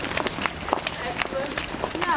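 Footsteps of a group of people walking on hard ground: many irregular, overlapping steps, with faint voices in the background.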